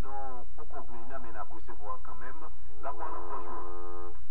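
A voice on a religious radio broadcast, thin and band-limited, over a steady low hum; near the end it gives way to one long held note.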